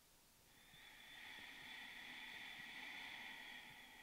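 A person's slow, faint breath: one long, steady breath lasting about four seconds, starting about half a second in.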